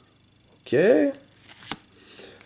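Pokémon trading cards being handled as one card is slid off the front of the stack: a short rustle of card stock ending in a sharp snap.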